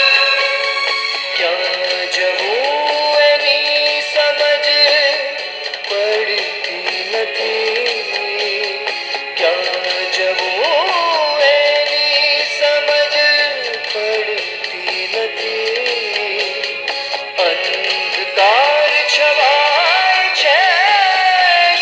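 A film song: a voice singing a melody with long held and sliding notes over musical accompaniment, played through a television with no bass.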